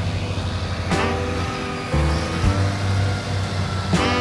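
Background music, its notes changing about once a second, with a truck's engine running underneath as it tilts a roll-off dumpster on its hoist.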